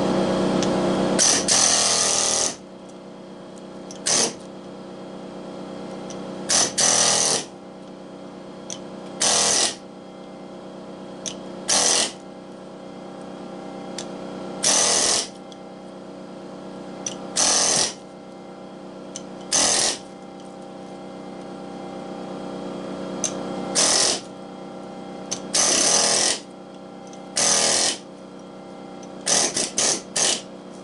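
Pneumatic air chisel hammering into copper stator windings in about a dozen short bursts, each under a second, with a steady mechanical hum running underneath. The first couple of seconds hold one longer stretch of continuous hammering.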